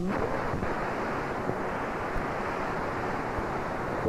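Steady hiss of static from an analog C-band satellite receiver tuned between channels, with no programme sound coming through.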